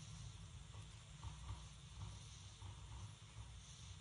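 Near silence with only a faint low rumble.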